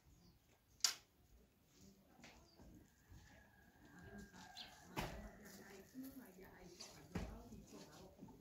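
Quiet courtyard ambience: one sharp click about a second in, a faint thin steady whistle in the middle, and a few soft knocks later on.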